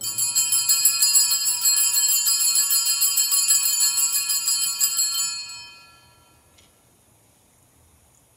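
Altar bells, a cluster of small bells, shaken in a rapid jingling ring for about five seconds, then dying away. They mark the priest's elevation of the consecrated host.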